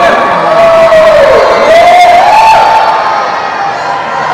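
One long, rising whoop from a voice, over crowd cheering.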